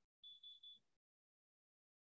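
Near silence: a faint, thin high tone lasts about half a second in the first second, then the sound drops to dead silence, as when a video call's audio gates out a pause.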